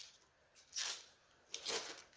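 Two short rustles of plastic trading-card holders being handled, about half a second in and again near the end.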